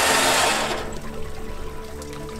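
Water pouring and streaming off a diver's drysuit and gear onto a metal dive platform, a loud rush that fades away within the first second. Background music with held notes plays underneath.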